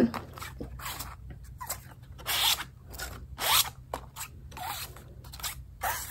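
Paper cards sliding in and out of the clear plastic pockets of a classroom pocket chart: several short scraping swishes, a second or so apart.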